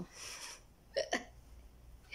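A woman's breathy exhale, then about a second later two quick, sharp catches of the voice in close succession, hiccup-like or a stifled laugh.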